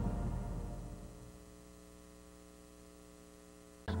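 The last of the station-ID music fades out over about the first second, leaving a faint, steady electrical mains hum. A voice and music cut in abruptly just before the end.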